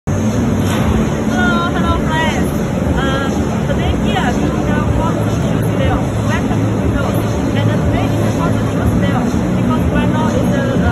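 Busy exhibition-hall ambience: a steady low hum and rumble with indistinct voices in the background.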